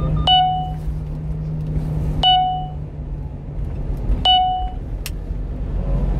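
Three electronic warning chimes in a one-ton truck's cab, evenly about two seconds apart, each a sharp ding that rings briefly, over the steady drone of the engine and tyres at cruising speed.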